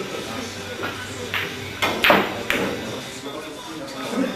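Pool balls clacking: a cue strike and ball-on-ball hits make a few sharp clicks over about a second, the loudest about two seconds in. Low chatter goes on underneath.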